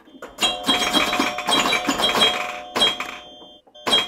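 Animated-logo intro sting: a quick run of clicks and pops over bright, ringing chime tones. It breaks off near the end, then comes one more sharp hit.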